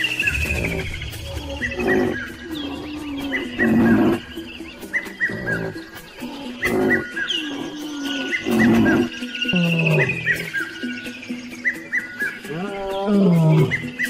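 Lions growling in repeated rough bursts over background music, with short high chirps throughout.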